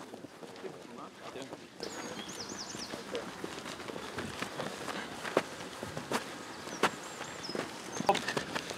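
Outdoor training-pitch ambience. Faint distant voices and the footfalls of players jogging on grass are heard, with a few sharp thuds in the second half. A bird chirps a quick run of high notes about two seconds in and again near the end.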